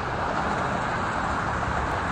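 Steady roar of highway traffic.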